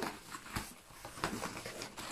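Cardboard and paper rustling and scraping in short, faint bursts as a paper-wrapped rolled canvas is handled inside a corrugated cardboard box.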